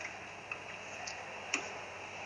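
Steady low room hiss in a pause between speech, with two faint clicks: one about half a second in and a sharper one about a second and a half in.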